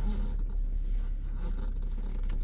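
Steady low hum inside a parked car's cabin, with faint rustling and scraping.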